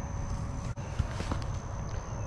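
Footsteps and rustling on grass, with a few soft knocks around the middle, as an angler steps over and grabs a small largemouth bass lying on the lawn of the bank.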